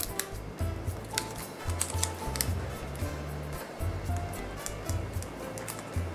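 Background music with a stepping bass line and short melody notes, over scattered light clicks and rustles from hands handling ribbon, paper and a small plastic candle.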